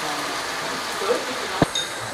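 Sukiyaki broth sizzling and simmering in a hot iron pan over wagyu beef as the sauce goes in: a steady hiss. A single sharp clink comes about a second and a half in.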